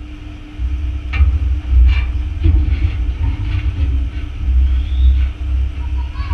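A low, unsteady rumble, with a few faint knocks about one and two seconds in.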